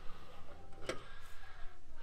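A recessed chrome latch on a trailer's metal storage-box door being worked open: a couple of sharp latch clicks, the clearer one about a second in, over a low steady background rumble.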